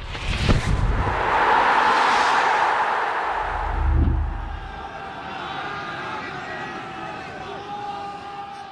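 Sound-effect sting for an animated logo: a sharp whoosh and hit, a rushing swell of noise, a deep boom about four seconds in, then a quieter fading tail.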